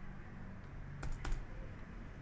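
Computer keyboard keystrokes: a few quick key taps about a second in, typing digits.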